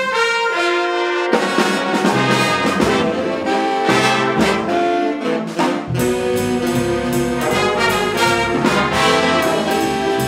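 A jazz ensemble playing, with its brass section holding chords over a steady beat that shows as regular cymbal-like ticks in the second half. The low instruments drop out briefly near the start and again in the middle before the full band returns.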